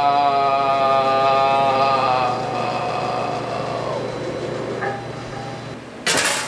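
A man's long, drawn-out wail held on one low note, wavering slightly, loud at first and then fading away over the last few seconds.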